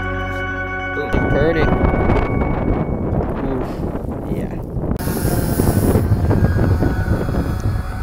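Background music that ends about a second in, giving way to wind buffeting the microphone in rumbling gusts.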